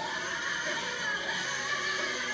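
Live gospel singing: a woman's voice through a microphone holding a high, wavering vocal line.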